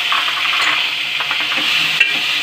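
Chopped onions, tomatoes and dried red chillies sizzling steadily in hot oil in an aluminium pot, with a spatula starting to stir them near the end.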